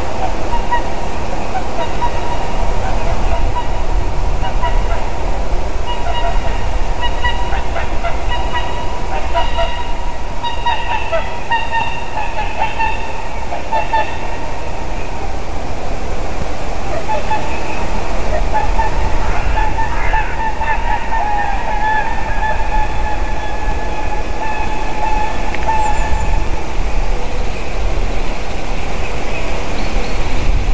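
Swans calling in flight: repeated honking calls, often overlapping, over a steady low rumble. The calls fade out in the last few seconds.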